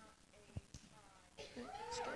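A faint, high-pitched voice with gliding pitch, heard away from the microphone. About one and a half seconds in, a congregation starts cheering and clapping, growing louder.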